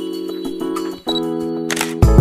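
Background music: sustained keyboard chords over a light, regular ticking beat, changing chord about a second in, with a brief swoosh near the end.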